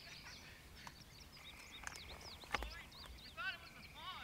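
Faint field ambience of small bird chirps and a thin steady insect trill, with a faint, distant voice calling back briefly near the end.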